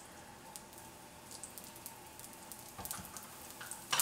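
Faint sizzling and crackling of cooking oil in a hot stainless skillet with browned sausage bits, the crackles getting busier near the end. A sharp knock comes at the very end.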